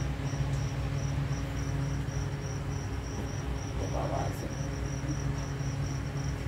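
A cricket chirping steadily in a high, even rhythm of about four chirps a second, over a steady low hum.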